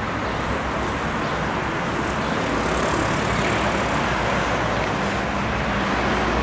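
Steady road-traffic noise from passing cars.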